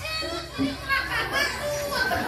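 Children's voices chattering and calling out over a low steady hum.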